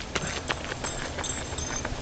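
Footfalls on a gravel and dirt trail as a runner and a dog come up it: a run of irregular light taps and crunches.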